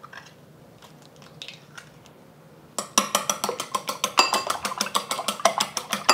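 Eggs beaten with chopsticks in a ceramic bowl: from about three seconds in, a fast run of sharp clicks as the sticks strike the bowl, six or seven a second. Before that there are only a few faint taps.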